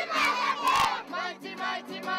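A crowd of schoolchildren shouting together in loud chanted bursts, twice in the first second, then singing along to a strummed acoustic guitar.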